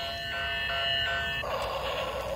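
Electronic beeping tune from a battery-powered toy train's sound chip: thin, simple notes stepping from pitch to pitch. About one and a half seconds in it changes to a hissing noise.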